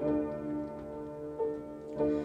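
Upright piano played slowly: three chords struck about a second or more apart, each left to ring.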